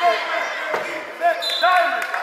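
Gym sound of a youth basketball game: players and onlookers calling out over one another, with a basketball bouncing on the court about three quarters of a second in. A brief high squeak comes about one and a half seconds in.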